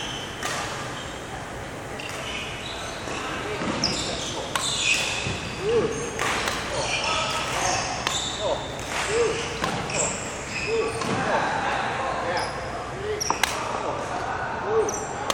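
Badminton rally in a large, echoing sports hall: sharp racket hits on the shuttlecock every second or two, with footwork on the wooden court and voices in the background.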